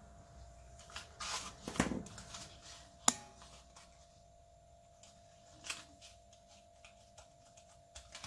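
Hands handling a folded-paper pinwheel and die-cut card centre: paper rustling between one and two seconds in, a single sharp click about three seconds in, then a few faint soft touches. A faint steady tone sits underneath.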